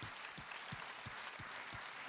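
Audience applause: many hands clapping in a dense, steady wash, with one nearer clapper standing out about three times a second.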